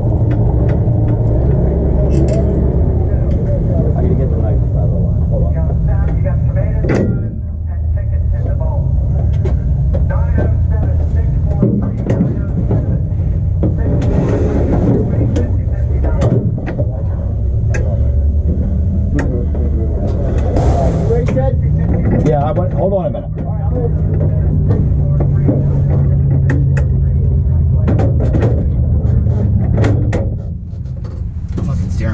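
A 1967 Mustang Pro Mod drag car's engine running at idle and low speed, heard from inside the stripped, caged cockpit as a loud, steady low rumble. The sound eases briefly twice, about a third of the way in and again past two-thirds.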